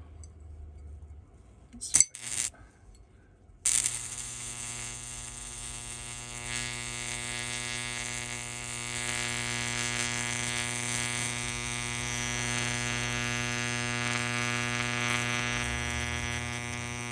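Electrical arc at the tip of a nail electrode in water: a couple of sharp snaps about two seconds in, then from about three and a half seconds a steady buzz as the arc holds and glows at the nail tip.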